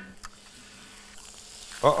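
Butter and eggs sizzling faintly on a hot flat-top griddle, with one light tap just after the start.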